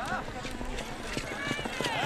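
A horse's hooves galloping on dry dirt, a run of uneven thuds, with a voice calling out briefly at the start.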